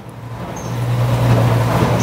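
A motor vehicle going by outside, its noise growing louder over about a second and a half, with a low steady hum from about half a second in.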